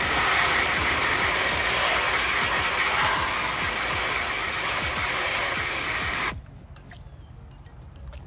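Garden-hose spray nozzle jetting water onto steel tin snips, rinsing off the acid and loosened rust: a steady hiss of spray that cuts off suddenly about six seconds in.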